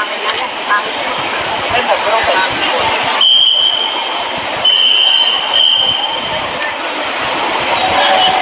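Voices of a small crowd talking over one another amid steady background noise. A high, steady whine sounds twice in the middle, each time for about a second.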